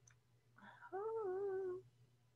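A woman's closed-mouth hum, one wavering "hmmm" about a second long, the puzzled sound of someone working something out.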